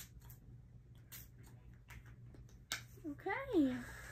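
Mario Badescu facial spray (aloe, herbs and lavender) pumped by hand onto a face: a few short hissing spritzes of mist, then a brief spoken 'okay' near the end.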